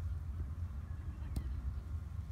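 Steady low outdoor rumble with one faint tap about one and a half seconds in.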